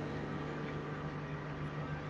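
Room tone: a steady low hum with a faint even hiss beneath it.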